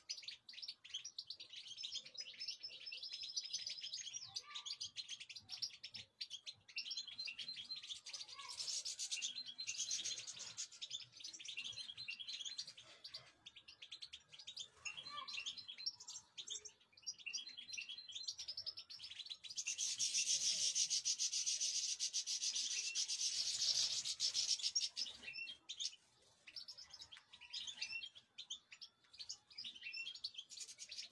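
Goldfinches chirping and twittering in short phrases. About two-thirds of the way through comes a louder stretch of rapid twittering song lasting about five seconds.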